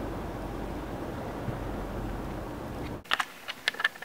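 Steady car cabin noise of a car being driven, road and engine, which cuts off suddenly about three seconds in. A few sharp clicks follow near the end.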